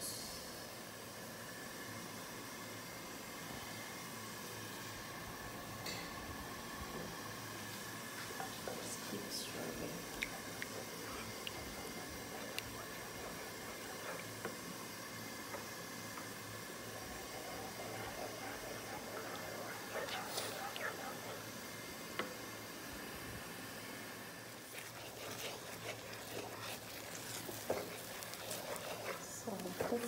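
Beaten eggs cooking in hot oil in a frying pan with a faint, steady sizzle while a wooden spatula stirs them. Scraping and tapping strokes against the pan get louder near the end.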